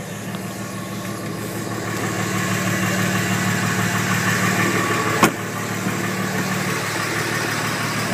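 5.9L Cummins common-rail turbodiesel idling steadily, heard from inside the truck's cab. A single sharp click sounds a little past halfway.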